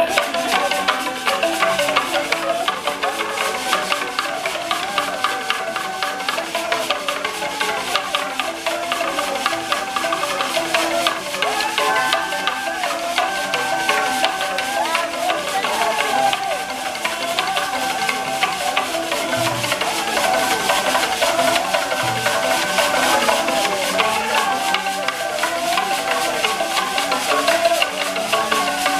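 Large Ugandan log xylophone played by several people at once with wooden beaters: fast interlocking wooden notes in a steady repeating pattern, with held higher notes of a melodic line over it.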